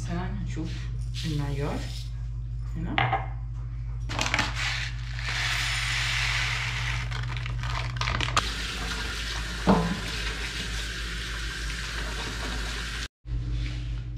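Kitchen tap water running into the sink, with dishes clinking, as sushi rice is washed in a plastic strainer.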